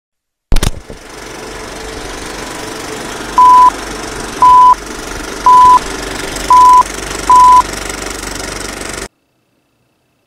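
Old film-leader countdown sound effect: a click, then a steady rattling film-projector clatter with five short beeps at one pitch, about one a second, the clatter cutting off suddenly near the end.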